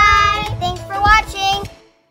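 Young girls' high-pitched voices calling out a long, sing-song goodbye, followed by a few shorter calls that fade away shortly before the end.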